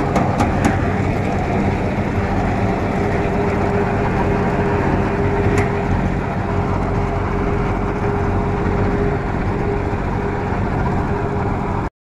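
John Deere 5202 tractor running steadily under load while driving a Shaktiman super seeder, whose rotor churns the soil: a dense, constant mechanical din with a steady hum. A few sharp clicks come in the first second, and one more about halfway through.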